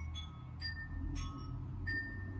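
Background music of bell-like chime notes, about four struck notes in two seconds, each ringing on briefly, over a low steady hum.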